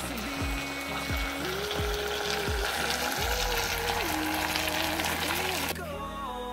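Hiss of food frying in a pot on a gas burner under a background pop song with a steady beat and a sung melody. The frying cuts off suddenly near the end, leaving only the music.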